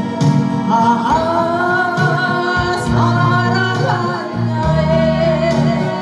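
A woman singing a Korean song into a microphone over a karaoke backing track. She holds long notes with a slight waver.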